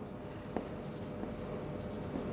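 Marker pen writing on a whiteboard: faint short squeaks and taps of the pen strokes over a steady background hum.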